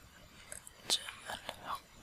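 A person whispering faintly close to the microphone, with a few soft mouth clicks.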